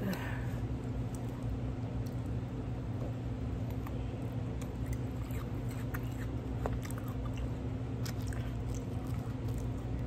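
A person chewing food, with small wet mouth clicks scattered throughout.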